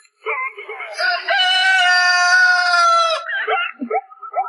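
Short chicken clucks, then a rooster's crow held on one steady pitch for about two seconds that dips slightly as it ends, followed by more clucks; these are sampled chicken sounds set to the tune of a song.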